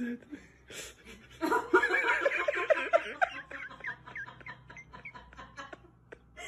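A person laughing: a run of quick giggles starting about a second and a half in, then tailing off in a few fainter chuckles.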